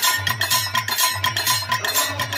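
Folk-music percussion: a hand drum beating a steady rhythm of about four strokes a second, with small metallic clinks on the beat.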